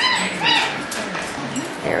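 African grey parrot giving two short, high-pitched calls about half a second apart.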